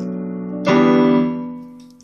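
Digital piano chords. A held chord fades out, then a new chord is struck about two-thirds of a second in and left to ring and die away.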